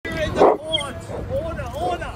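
A man yelling in loud, high-pitched shouts, a string of short drawn-out cries about two a second, with a louder rough burst about half a second in.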